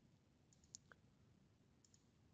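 Near silence with a few faint, short clicks of a computer mouse, the loudest two close together just under a second in.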